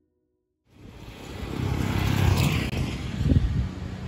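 Road noise from a vehicle passing on the bridge, starting after a short silence about two-thirds of a second in, swelling over a second or two and then easing. Wind buffets the microphone with low rumbling gusts.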